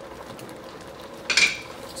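Shrimp shells cooking with a steady low sizzle in a stainless steel pot, and a single sharp metallic clink with a short ring about a second and a half in.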